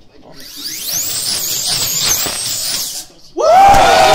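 G7-class slot car's small electric motor whining at high speed around the track, its high pitch rising and falling through the corners. The whine stops about three seconds in, and a man lets out a loud, long shout of triumph at the record lap.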